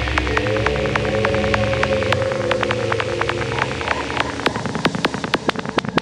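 Electronic trance track at 154 bpm in a breakdown. A sustained synth pad rises in pitch and fades out a little after halfway, under a steady run of sharp clicks at about five a second. Near the end the clicks speed up into a build toward the drop.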